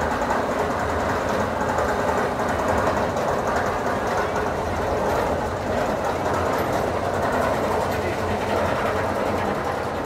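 Mine-train roller coaster running on its steel track: a steady, even rumble of wheels on rail with a faint rapid clatter.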